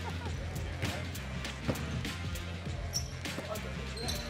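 A basketball being dribbled and bounced on a hardwood gym floor, bounces at an uneven pace, over background music with a steady bass.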